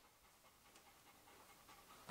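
A golden retriever panting very faintly over near-silent room tone.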